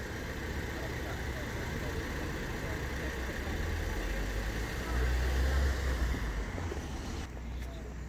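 Road vehicle noise: a low engine and tyre rumble that swells about five seconds in and then fades, over a steady traffic hum.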